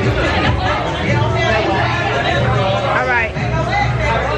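Chatter of several people's voices talking over one another, with a low steady rumble underneath.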